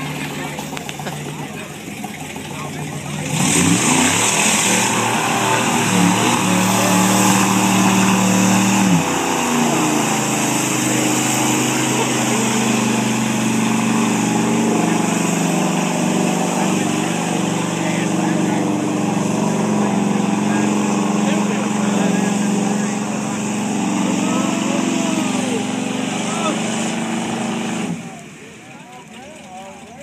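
A lifted Ford F-150 pickup running at high revs through a mud bog pit, its tyres spinning and throwing mud. The engine comes in hard about three seconds in, its note drops once around nine seconds in, and it runs on until it falls away near the end.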